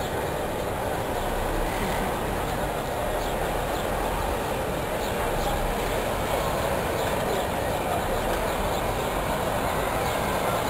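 Steady, even rumble of wind buffeting the microphone outdoors, with no distinct events standing out.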